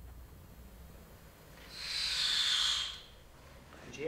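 A single breathy hiss lasting just over a second, starting a little under two seconds in.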